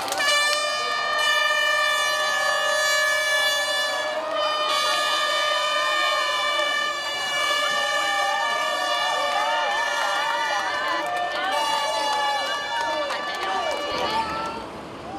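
An air horn sounding the start of a half marathon: one long steady blast of about four seconds, a brief break, then a second long blast that holds almost to the end. Crowd cheering and shouts rise over the second blast.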